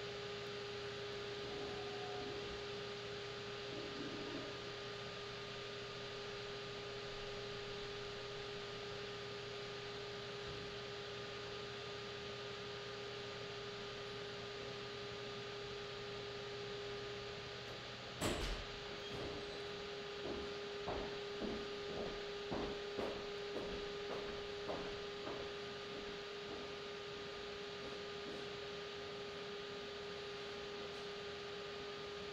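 Steady electric hum and whine of a running pottery wheel. About eighteen seconds in, a sharp click comes as part of the low hum drops out. A run of light, irregular taps follows for several seconds.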